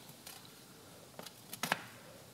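A few light clicks and taps of a stainless steel muffler end cap being fitted back onto the muffler body, with two sharper clicks about one and a half seconds in.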